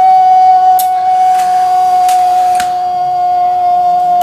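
A loud, steady, high-pitched tone held at one pitch, with a fainter lower tone beneath it and a few faint clicks.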